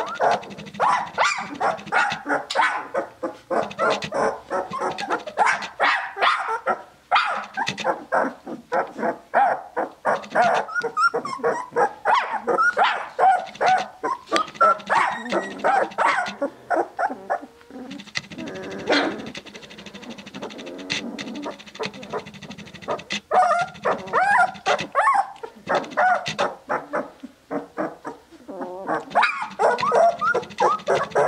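A litter of two-week-old Tibetan Mastiff puppies crying, many short high whines and squeals overlapping one another. The calls ease off into a quieter lull a little past the middle, then pick up again.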